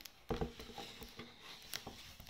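A picture book being handled and set down on a table: paper rustling with a few light knocks, the loudest about a third of a second in.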